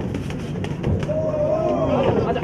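Live boxing bout: a few sharp thuds from the ring over a steady low hum, then raised, shouting voices from about a second in.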